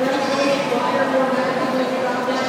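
Goats bleating over the chatter of a crowd, with a steady hum underneath.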